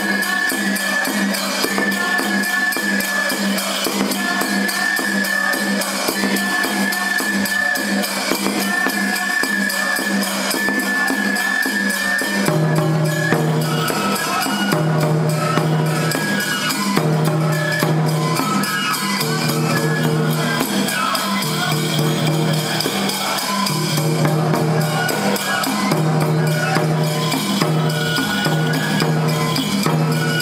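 Toramai tiger-dance festival music: taiko drums beating steadily under a high flute melody in repeated phrases. About twelve seconds in the music changes, and a lower pitched melodic part joins the drums.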